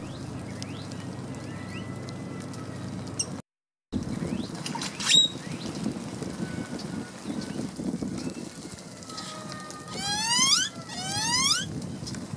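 Wild birds calling outdoors over a steady low background rumble. There are faint thin whistles, a sharp high call about five seconds in, and near the end two loud rising calls about a second apart. The sound cuts out briefly a little over three seconds in.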